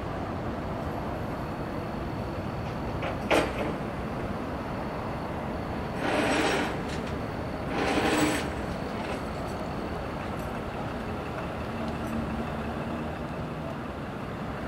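Steady rumble of semi trucks in a parking lot. There is one sharp sound a little over three seconds in, and two louder rushing sounds, each under a second long, about six and eight seconds in.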